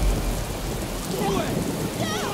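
Rain pouring down on pavement, with a deep rumble dying away over the first second.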